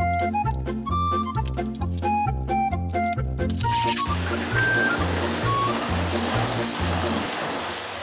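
Background music with a bouncing bass line and bright plucked notes. About halfway through, a canister vacuum cleaner starts running with a steady hiss under the music. The music fades near the end while the vacuum keeps going.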